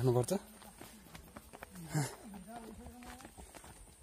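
Voices of people walking outdoors: a man's voice at the very start, a short falling call about two seconds in, then faint talking, over light footsteps on a dirt path.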